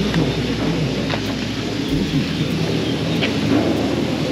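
Steady rumbling noise of a chairlift's bottom-station machinery as the chair carrying a rider and his bike moves through the station, with a couple of faint clicks.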